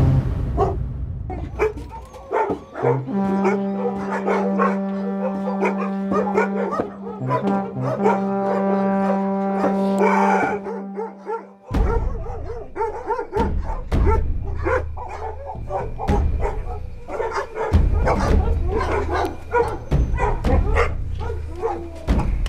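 Many caged dogs barking in rapid, overlapping barks, mixed with background music whose long held note fills the first half before it cuts off.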